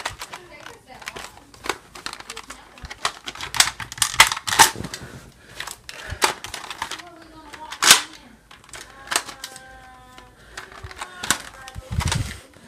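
Irregular sharp clicks and knocks of a plastic Nerf blaster being handled and carried at speed, several loud ones in the middle, with faint voices in the background near the end.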